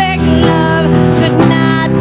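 Live worship band music: guitar and held notes over drum hits that fall about once a second.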